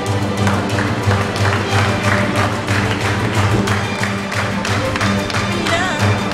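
Live string ensemble with violin and cello playing an upbeat piece over a pulsing bass line, with sharp taps keeping a fast beat, about three or four a second.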